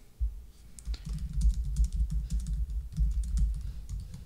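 Typing on a computer keyboard: a fast, steady run of keystrokes.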